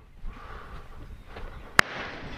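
Low outdoor ambience with wind on the microphone, then a single sharp crack near the end: a distant shotgun shot.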